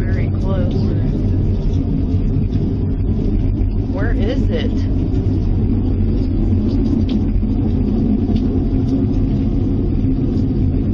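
A loud, steady low rumbling drone from the sky, of unexplained source, that holds its level throughout. Faint voices are heard briefly near the start and again about four seconds in.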